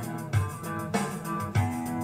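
Song's instrumental backing with no singing: guitar playing over bass notes.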